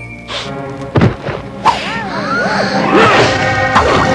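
Cartoon soundtrack: music with a thud about a second in and another just after, then swooping, sliding tones. Near the end it turns into a louder, busier clatter as the character crashes into a cake full of candles.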